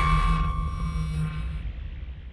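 The fading tail of a logo intro sound effect: a low rumbling drone with a steady ringing tone above it, dying away over the two seconds.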